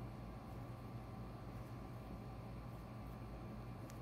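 Quiet room tone with a steady low hum; working the soft clay by hand makes no distinct sound.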